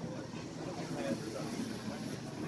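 Low background chatter of spectators, with the rolling hiss of inline skate wheels on a wooden rink floor growing in the second half as a pack of skaters passes close by.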